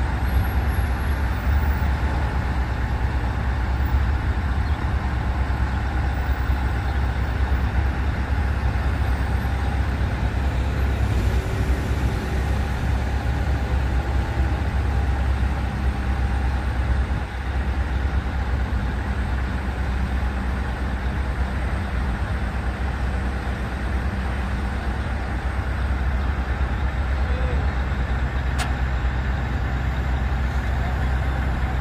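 Mobile crane's diesel engine running at a steady low drone as the crane lowers a suspended rooftop AC unit onto a trailer. A single sharp click comes near the end.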